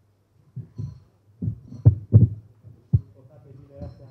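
A series of dull, low thuds and knocks from handling at a table holding glass draw bowls, picked up close by the table microphone. The loudest come about two seconds in and again near three seconds, with faint voices beneath.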